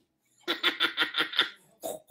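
A woman saying a drawn-out "you" in a silly, laughing voice that pulses about six times a second, after a half-second pause.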